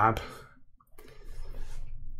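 A single computer mouse click about a second in, followed by faint noise.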